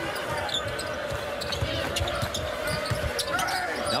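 Basketball being dribbled on a hardwood court during a game, short thumps over the steady murmur of an arena crowd.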